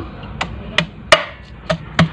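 Garlic cloves being crushed on a plate: four or five sharp, irregularly spaced knocks.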